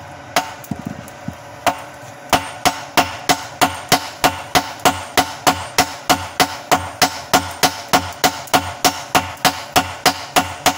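Hammers striking red-hot bearing steel on a steel anvil while a golok blade is hand-forged. After a few scattered taps, the blows settle about two seconds in into a steady rhythm of about three strikes a second, a hand hammer and a sledgehammer striking in turn.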